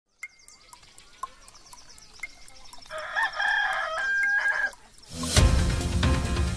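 A clock ticking about four times a second, joined by a rooster crowing for about two seconds, then a music jingle starting just after five seconds in: a wake-up sound-effect intro.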